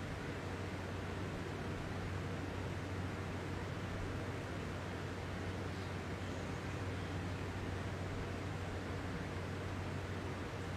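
Steady room noise: an even hiss with a constant low hum underneath, unchanging throughout.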